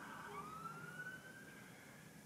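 Fire engine siren, faint, one slow rising wail.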